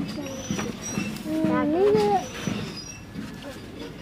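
Quiet voices of a small group, with one short rising vocal sound about a second and a half in.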